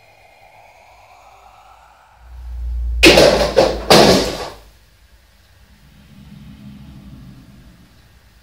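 A faint rising tone, then a low rumble swells and breaks into three loud bangs in little more than a second, like a door slamming or heavy knocking, which die away quickly.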